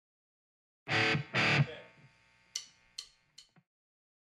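A hard rock band playing live: two loud, full chords struck together on electric guitars and bass, left to ring and fade, then three short, sharp hits. It is a phone recording made at band practice.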